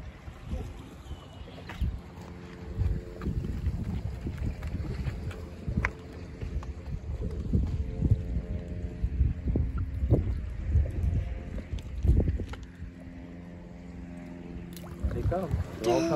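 Wind gusting over the microphone by the sea, with a steady low motor drone underneath through the middle of the stretch.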